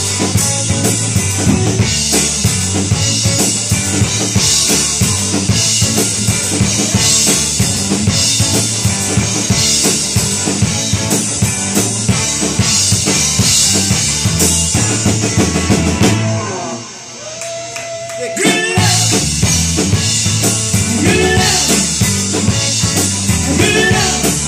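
Live rock band playing an instrumental passage: electric guitars, bass guitar and drum kit. About two-thirds of the way through the band drops out briefly, leaving one held note, then the full band comes back in.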